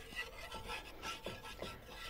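Faint scraping of a spoon stirring thick cream gravy in a cast iron skillet, a few soft irregular strokes.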